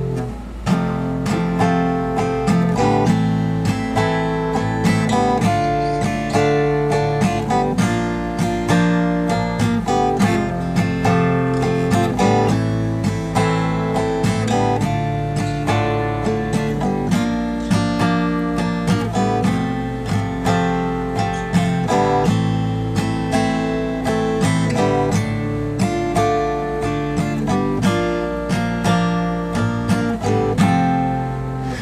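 Steel-string acoustic guitar strummed in a steady, even rhythm, following the down-down-up-down-up-down-up-down strumming pattern through changing chords.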